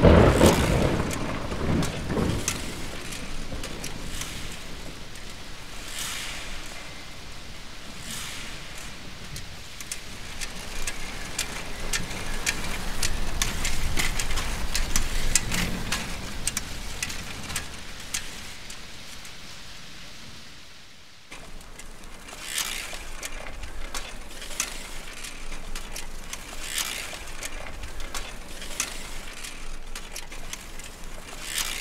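A bicycle being wheeled and ridden, its tyres making a rolling noise on the ground and its chain and freewheel ticking, with many small clicks throughout. A loud thump comes at the very start. The sound drops away abruptly about two-thirds of the way through and picks up again at once.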